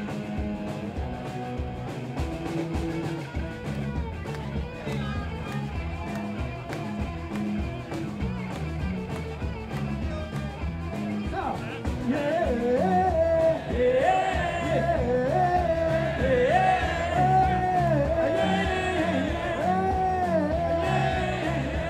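Live rock band playing: electric guitar, bass and a steady drum beat. The lead vocal comes in about twelve seconds in, and the music is louder from there on.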